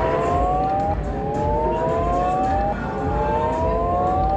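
Buffalo Gold Max Power video slot machine's reel-spin sound effect: a cluster of electronic tones rising steadily in pitch, breaking off and starting again from low about every two seconds, over a dense low casino rumble.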